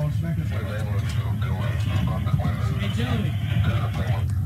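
Several men's voices, indistinct and overlapping, heard over a steady low rumble.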